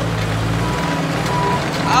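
Skid-steer loader's engine running steadily as the machine, fitted with a grapple, digs at and pulls on a buried electric-pole stump.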